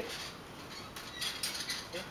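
Light metallic clicking and rattling from a hand-cranked Geneva-mechanism paper cutting machine's chain drive and linkage, a few quick clicks starting about halfway through.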